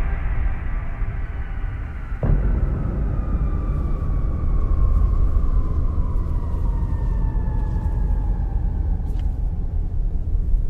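Trailer sound design: a deep, steady rumbling drone with a sudden low hit about two seconds in, over which thin high tones slowly slide downward.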